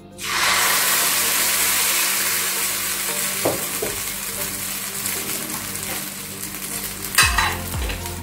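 Appam rice batter hitting a hot, oiled iron appam pan (appachatti) and sizzling loudly. The sizzle starts suddenly and slowly fades as the batter sets. There is a sharp knock near the end.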